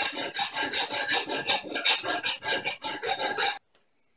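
Hand metal file rasping back and forth across a stainless-steel steak knife blade clamped in a vise, grinding the blade down to reshape the edge, in quick, even strokes. The filing stops abruptly shortly before the end.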